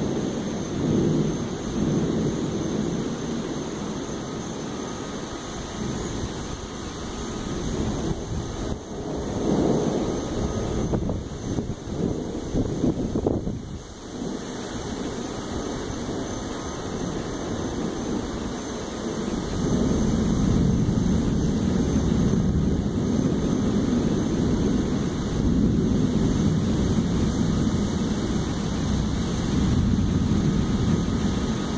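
Building thunderstorm: a low rumble of thunder and gusting wind that swells and fades in waves. It grows louder and steadier about two-thirds of the way through.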